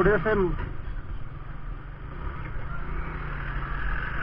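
Hero Splendor 100cc motorcycle's single-cylinder four-stroke engine running steadily at low speed as the bike rolls off slowly, heard from on the bike. A man's voice speaks briefly at the start.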